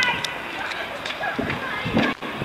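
Indistinct high-pitched voices of a young dragon-boat crew calling out, strongest at the start.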